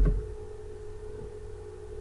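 Steady electrical hum of the recording setup: a constant mid-pitched tone over a low hum and faint hiss, with no typing or clicks.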